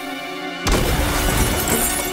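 Tense film score with steady held tones, broken about two-thirds of a second in by a sudden loud crash of shattering glass that leaves a noisy clatter after it.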